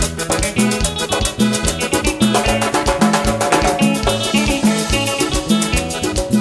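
Live cumbia band playing an instrumental passage with no singing: accordion over bass guitar, congas, drum kit and a metal scraper keeping a steady, even beat.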